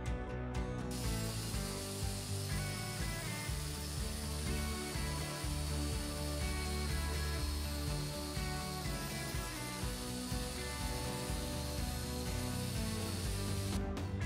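Angle grinder with an abrasive disc running along a rusty square steel tube, grinding the scale off in a steady hiss that starts about a second in and stops just before the end, over background music.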